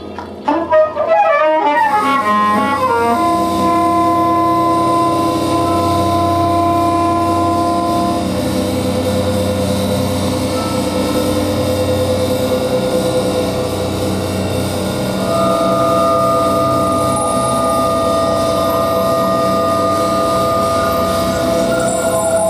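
Free-improvised music for saxophone and live electronics: a quick flurry of gliding notes about half a second in, then long held tones at several pitches over a dense, steady drone, with new held tones entering about two-thirds of the way through.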